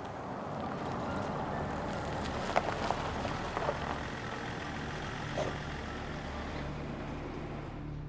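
A BMW X5 SUV rolling slowly over paving stones and pulling up, its engine running with tyre noise, and a few short clicks and crunches from the tyres about halfway through.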